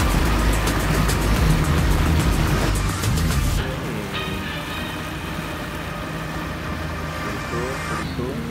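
Boat motor running under way, a steady low hum with a rush of wind and water. About three and a half seconds in the rush drops away and a quieter hum carries on.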